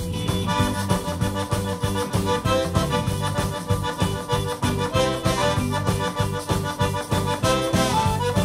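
Zydeco band playing live with no singing: accordion leading with short repeated notes, over drums, bass and a scraped metal rubboard in a fast, even rhythm.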